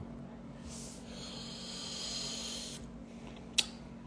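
A faint hiss-like rubbing noise lasts about two seconds, close to a phone's microphone. It is followed by a single sharp click near the end.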